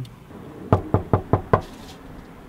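Five quick knocks on a door, about five a second, starting a little under a second in.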